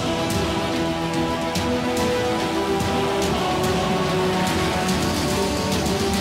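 Dramatic background score: sustained tones over a dense, rain-like hiss, with a sharp hit about once a second.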